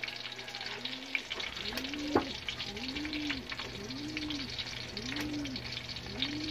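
Hotdogs sizzling and crackling in hot oil in an aluminium wok, with metal tongs scraping and clinking against the pan as they are turned; one sharper clink about two seconds in. A low rising-and-falling tone repeats about once a second in the background over a steady low hum.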